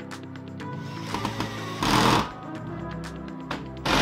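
Cordless drill-driver running in two short bursts, driving screws into a folding wall bracket: once about two seconds in and again at the very end. Background music plays throughout.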